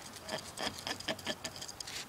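A quick, irregular run of light taps and scratches on coiled corrugated plastic drainage pipe, about six a second, with a slight hollow ring.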